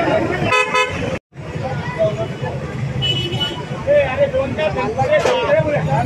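A vehicle horn toots once, briefly, about half a second in, over street chatter and a steady low engine rumble. The sound drops out for an instant just after, and a short thin high tone sounds about three seconds in.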